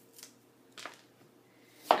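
A knife cutting into an apple twice, two short faint crunches as the core is cut out, followed by a voice near the end.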